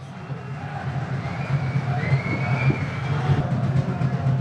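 Outdoor ambience of a football ground picked up by the broadcast microphone: a steady low rumble with a hiss over it, fading in and growing louder, with faint distant sounds in the middle.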